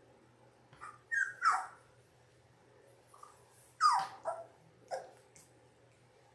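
Two-and-a-half-week-old Labrador retriever puppies whimpering and yelping: short, high cries that fall in pitch, in two clusters, about a second in and about four seconds in.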